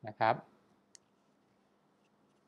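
A man's voice says a short phrase, followed a little under a second in by a single short, sharp click, then only faint steady hiss.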